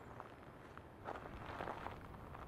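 Footsteps crunching on a sandy gravel track, with a cluster of steps about a second in.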